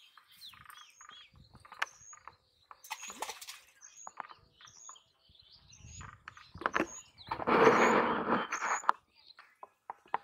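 A small bird calling over and over, a short high chirp that rises and drops, about once a second. About seven seconds in comes a louder noisy burst lasting a second and a half.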